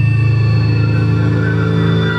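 Live experimental ambient music: a low sustained drone with several steady tones layered above it, without a beat.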